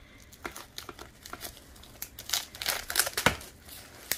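Scissors cutting into a plastic bag, the plastic crinkling in a string of irregular crackles and snips that grow busier and louder about halfway through.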